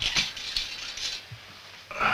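Light handling noises of a trombone and sheet music being moved: a couple of sharp clicks near the start, then faint rustling over quiet room hiss.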